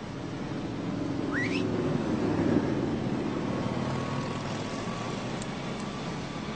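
City street traffic going by steadily, swelling in the middle, with a short rising whistle-like tone about a second and a half in.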